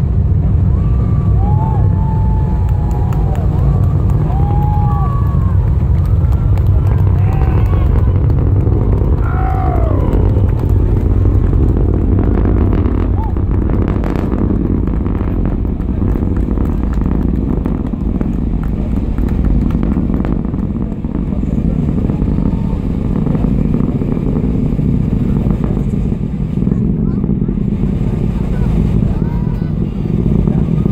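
Atlas V rocket's launch roar reaching the spectators: a loud, steady deep rumble. Whoops and cheers from the crowd ride over it for the first ten seconds or so, then the rumble continues alone.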